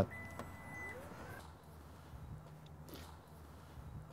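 Lexus NX 350h power tailgate closing at the press of its button: a steady warning beep lasting about a second, with a faint rising motor whine as the tailgate begins to lower.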